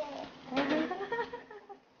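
Women laughing together in an excited, giggling burst that dies away near the end.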